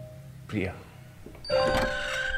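A bright, bell-like chime about three quarters of the way in, several clear tones ringing on together: a music cue in the film's soundtrack.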